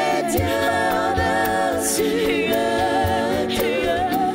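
Live gospel worship music: a woman sings lead into a microphone, with other voices singing along and a band behind her. Several sung lines overlap over a steady low beat.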